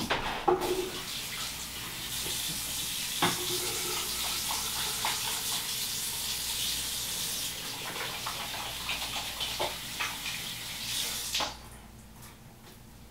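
Tap water running steadily into a sink during hand washing, with a few small knocks; the water shuts off near the end.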